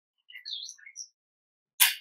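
A few faint high chirps in the first second, then near the end a short, loud smack of a kiss on the cheek.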